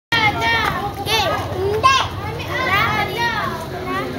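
Several children talking and shouting excitedly over one another in high voices.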